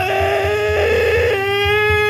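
A man's singing voice holding one long, loud, high note with his mouth wide open. The tone turns rough and gritty for about half a second, about a second in, then holds on clean and steady.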